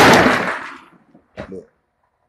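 A sudden loud crash or clatter that fades away over about a second, followed by a man saying "Look."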